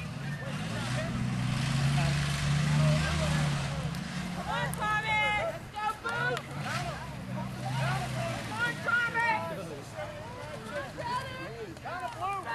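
A motor vehicle driving past, its engine hum growing louder over the first two to three seconds and fading away by about eight seconds, under people talking.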